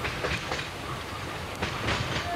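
A train running on the rails, with a rumble and a few sharp clacks of wheels over rail joints, a group near the start and another near the end.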